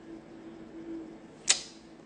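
A single short, sharp click about one and a half seconds in, over a faint steady hum.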